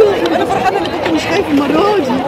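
Several people's voices chattering close by, over a steady background hiss.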